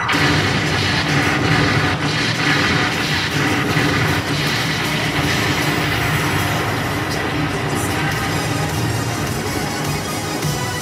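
Loud, continuous show music played over a stage PA system.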